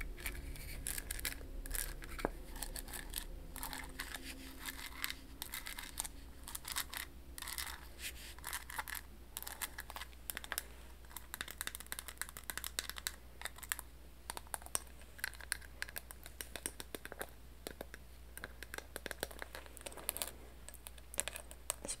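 Long acrylic fingernails tapping and scratching across the tiny shells glued over a seashell-covered jewelry box: a dense, irregular run of light clicks and scrapes.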